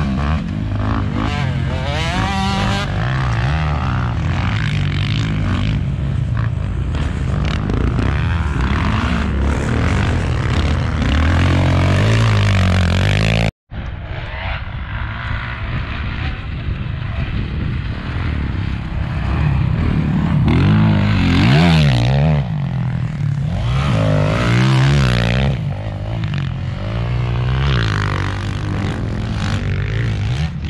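Motocross dirt bike engines revving up and down, rising and falling in pitch as the bikes ride the dirt track. The sound cuts out briefly about halfway through.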